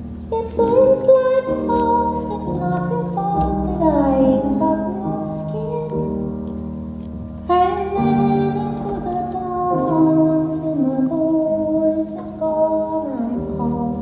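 Live music: a woman singing a slow song in long phrases over sustained instrumental accompaniment, a new phrase starting about halfway through.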